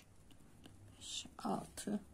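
Quiet speech only: a woman counting stitches softly in Turkish, under her breath, from about a second in.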